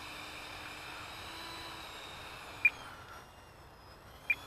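Electric ducted fan of a Freewing F-35 RC jet running at low throttle on the ground with a steady high whine, easing off about three seconds in, with one short click just before.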